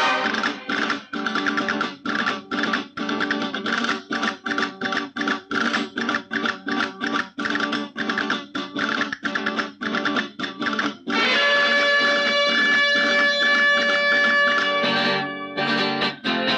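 Instrumental introduction of a 1990s Bollywood film song: rapid, choppy staccato chords on plucked strings, then long held notes from about eleven seconds in.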